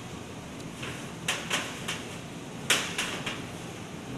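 A series of sharp clicks and knocks as a projector power cord and its plug are handled against the projector and the steel table, the loudest a little under three seconds in.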